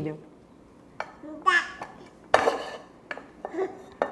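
A spoon knocking against a frying pan, five or so scattered knocks and clatters, the loudest a little past halfway.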